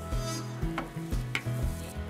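Rustling and light clicks of fabric pieces being handled and shifted on a table, over background music with a steady bass line.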